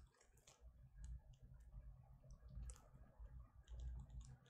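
Near silence: a faint steady low hum with scattered faint clicks.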